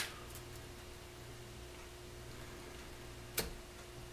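Two light clicks, one at the start and a sharper one about three and a half seconds in, over a faint steady hum: a plastic honey uncapping fork knocking wax cappings off into a glass dish and going back into the capped comb.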